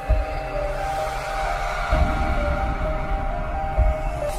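Logo intro music: held steady tones with deep low hits about every two seconds.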